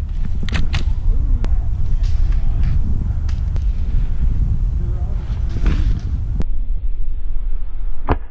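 Steady low rumble of wind buffeting the camera microphone, with a few sharp clicks and faint distant voices.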